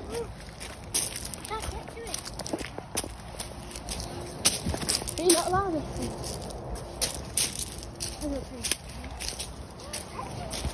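Footsteps on a gravel path, a steady run of irregular steps, with faint voices in the background.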